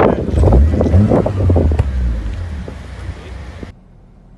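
Wind rumbling on the microphone outdoors, with indistinct voices over it; it cuts off suddenly near the end.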